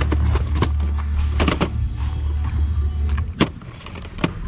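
Plastic cassette and VHS cases clicking and clacking as they are picked up and dropped in a thrift bin, a dozen or so short knocks, the sharpest a little after three seconds in. Under them runs a low steady rumble that fades out near the end.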